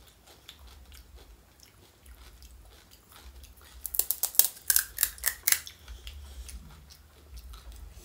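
Mouth-close chewing with small wet clicks, then, about four seconds in, a loud run of sharp crisp crunches lasting under two seconds as a hollow fried panipuri shell breaks, before the quiet chewing returns.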